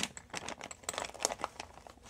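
Small clear plastic bag crinkling as it is handled, a run of irregular small crackles and clicks.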